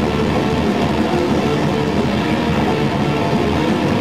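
Metalcore band playing live at full volume: distorted electric guitars and drums blur into a dense, noisy wall of sound. Near the end the playing gives way to a held, ringing guitar chord.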